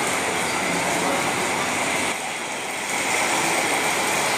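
Steady, fairly loud background hubbub with indistinct voices in it, dipping briefly a little past the middle.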